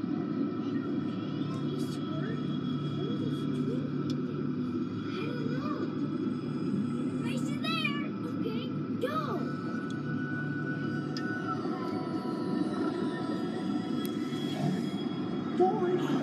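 Submarine ride's onboard soundtrack: underwater-themed music and sound effects over a steady low rumble. A quick run of up-and-down chirps comes about eight seconds in.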